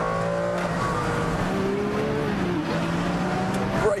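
Ferrari Enzo's 6-litre V12 running hard on the track, its note holding steady and then dropping in pitch a little past two seconds in.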